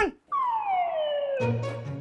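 A comic sound effect: after a brief dropout, a single whistle-like tone glides steadily downward over about a second. A low steady music drone comes in near the end.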